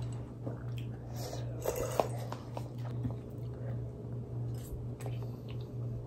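People chewing instant noodles, with a few small clicks and mouth noises, over a steady low hum.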